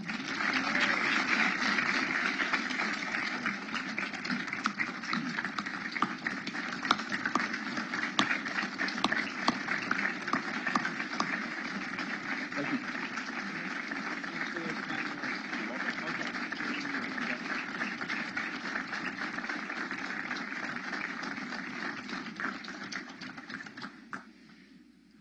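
A large audience applauding, a dense, sustained clapping with crowd voices mixed in. It is loudest at the start, eases off slowly and dies away just before the end.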